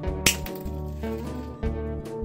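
A single sharp snip as end-cutting pliers bite through a thin metal wire, about a quarter second in, over soft instrumental background music.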